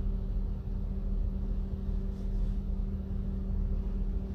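Steady low rumble with a constant hum, heard from inside a running car's cabin.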